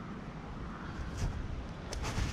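Wind noise on the microphone: a steady low rumble, with two faint clicks, one about a second in and one near the end.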